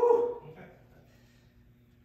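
A single short, loud shout of "Yeah!" at the very start, then quiet room tone with a faint steady hum.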